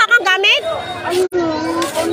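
Excited, high-pitched voices calling out among a crowd. After a brief dropout just past halfway, a steady held tone carries on.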